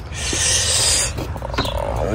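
Plastic front bumper parts scraping against their mounting bracket as they are handled: one rasping scrape about a second long, then fainter rubbing.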